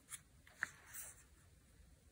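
Faint rustle and light taps of paper and cardstock pages handled by hand, with a small sharp tick about half a second in.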